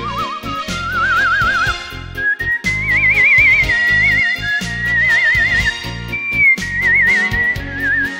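Human whistling carrying a slow, lyrical melody, with a wide, even vibrato on the held notes, over an instrumental backing with bass and a drum beat. The melody climbs in pitch over the first three seconds, then stays high.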